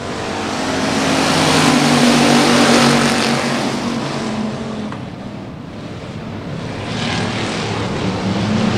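A pack of factory stock dirt-track race cars at full throttle on the restart after a caution. Their engines swell to a peak about two to three seconds in, fade, then build again near the end as the cars come back around.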